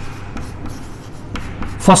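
Chalk writing on a chalkboard: a run of short scratchy strokes as letters are written, with a spoken word near the end.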